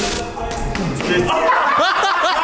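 Men laughing and calling out excitedly, growing livelier about a second in, with music still faintly under them.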